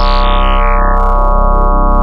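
A low, sustained synth bass note from Ableton's Operator, driven through Saturator's waveshaper as its Period setting is turned down. The buzzy tone's brightness falls away in steps over the first second or so, then holds dark and steady.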